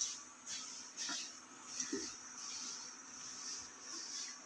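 Faint, steady sizzle of coconut pancakes shallow-frying in a non-stick pan. A few soft taps and scrapes of a wooden spatula come as the pancakes are lifted out.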